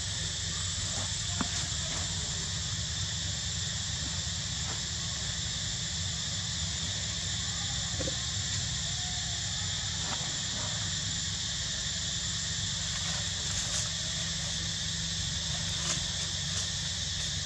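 Steady high-pitched insect drone over a low, even hum.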